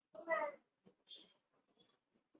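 A cat meowing once, short and faint, about a quarter of a second in.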